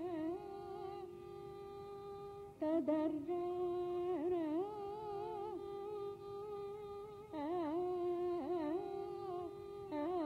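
Female Carnatic vocalist singing a raga alapana in Shanmukhapriya: long held notes ornamented with oscillating gamakas, in phrases that start afresh and louder about a third of the way in and again near three-quarters.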